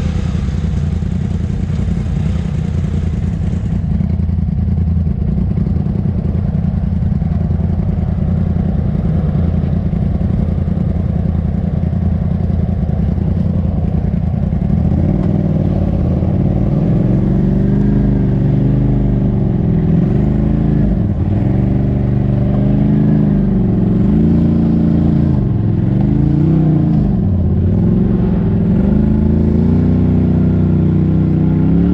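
Side-by-side UTV engine, heard from inside the cab. It runs at a steady low idle, then from about halfway it is revved up and down in repeated throttle blips as the machine crawls up over rock ledges.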